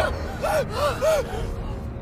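A person gasping in panic: four short, quick breathy cries, each rising and falling in pitch, over a low rumble of film score.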